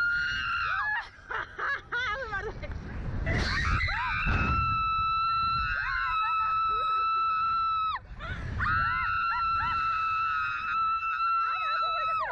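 Young women screaming on a slingshot thrill ride. Short gasps and broken cries come first, then two long, high, held screams: one from about four and a half seconds to eight, and another from about nine seconds on.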